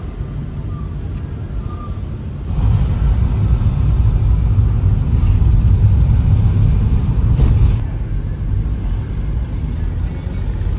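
Road and engine noise of a moving Toyota car heard inside its cabin: a steady low rumble that grows louder about two and a half seconds in and eases off again near the end.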